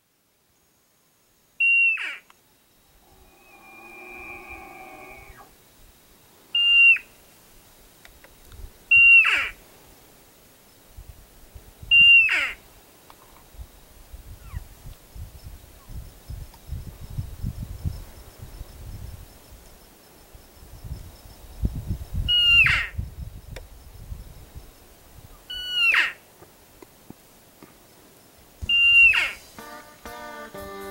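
Bull elk bugling: seven high whistling calls, each breaking off with a falling tail, spaced a few seconds apart, with a lower call with several stacked tones about four seconds in. A low rumbling noise runs through the middle stretch.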